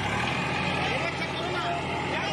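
Tractor diesel engine running steadily, a low even hum, with voices talking faintly over it.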